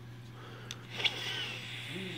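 A light click of handling, then a short, soft sniff about a second in as a person smells a small cardboard toy box.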